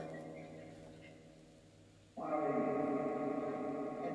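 PhasmaBox ghost box playing sustained, bell-like tones: one tone fades away, then a new one made of several steady pitches comes in abruptly about two seconds in and slowly dies down.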